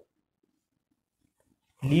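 Near silence with a few faint, short taps of a marker dotting a circle on a whiteboard, then a man starts speaking near the end.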